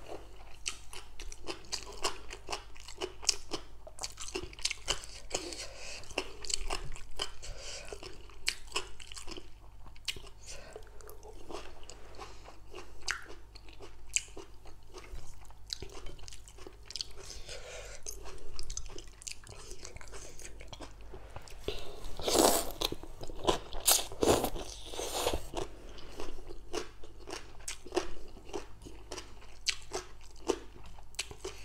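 Close-up crunching and chewing of shredded green papaya salad, a steady run of short crisp crunches with a louder stretch a little over two-thirds of the way through.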